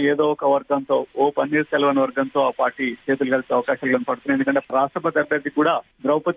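Speech only: one person talking steadily without pause.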